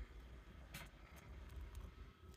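Faint, scattered scratches of a fork raking the wax cappings on a honeycomb frame, over a low steady hum.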